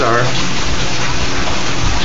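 Steady rush of running water in an aquaponic system.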